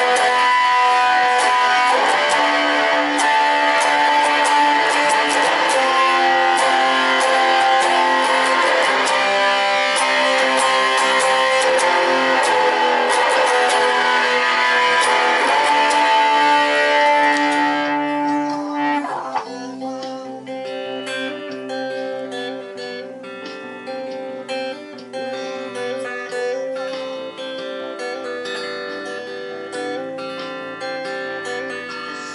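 Electric guitar, a Fender Stratocaster, played loud with dense strummed chords; a little over halfway through it drops to quieter, separate picked notes.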